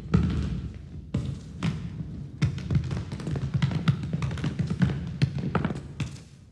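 A football being kicked, juggled and bounced on a hard studio floor: a string of irregular thuds that come closer together in the second half.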